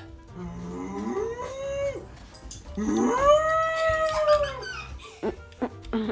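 Dog howling: two long howls, the second higher, louder and longer, each rising in pitch, holding, then falling away.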